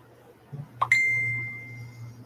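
A single bell-like ding a little under a second in: a sharp strike, then one clear ringing tone that fades away over about a second. A short soft knock comes just before it, over a steady low hum.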